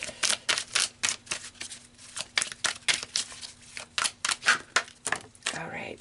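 A deck of tarot cards being shuffled by hand: a rapid, irregular run of light card flicks and taps.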